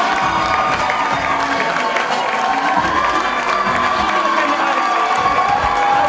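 A crowd cheering and shouting excitedly, with hand clapping throughout.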